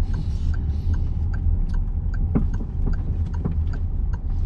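Low, steady engine and road rumble inside a Peugeot's cabin as the car moves off slowly, with a light ticking about three times a second from the turn indicator and a single soft knock about halfway through.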